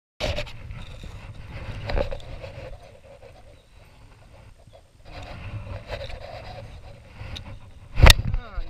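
Low rumble of wind and movement on an action camera's microphone in a small fishing boat, with scattered knocks; the loudest knock comes about two seconds in.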